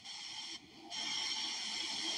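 Low, steady background hiss with no other distinct sound, briefly dipping about half a second in.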